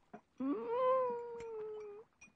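A single long cat-like meow starting about half a second in, rising sharply at the onset and then slowly falling in pitch as it is drawn out.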